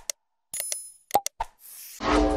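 Animated subscribe-button sound effects: short clicks and pops, a bright chime-like ding about half a second in, and a rising whoosh in the last half second.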